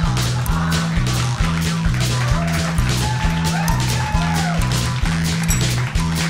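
Live band music: a repeating bass line and drum beat with jaw harps twanging over it, their tone sliding up and down.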